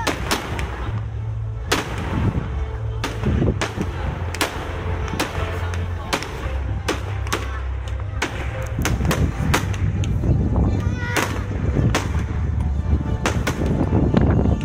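An aerial fireworks display: shells bursting in a rapid, irregular string of sharp bangs, about two a second, over a steady low rumble.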